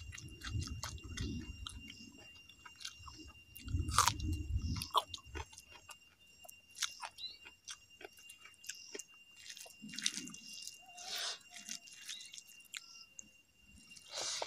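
A person chewing mouthfuls of rice and raw vegetables, with wet mouth clicks and smacks coming in bursts, the loudest about four seconds in.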